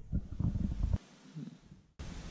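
Low, irregular rumbling noise on the camera's microphone, which stops suddenly about a second in, followed by one shorter burst.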